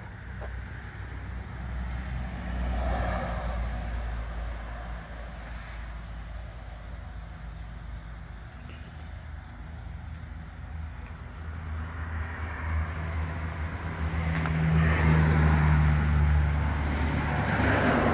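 A 2008 Honda CR-V's 2.4-litre four-cylinder engine idling steadily, a low hum that grows louder toward the end.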